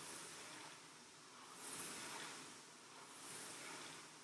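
Air-resistance rowing machine's fan flywheel whooshing faintly, swelling with each drive stroke, twice about a second and a half apart.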